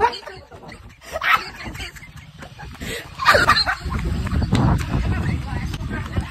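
A woman's loud shrieks and shouts, strongest about three seconds in. From then on a heavy low rumble of wind buffets the moving phone's microphone.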